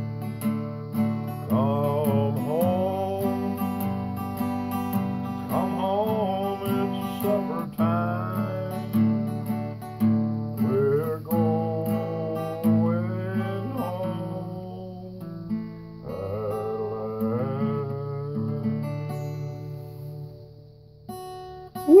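Acoustic guitar played slowly and fingerpicked, with a steady low bass line under a melody whose notes bend and glide in pitch.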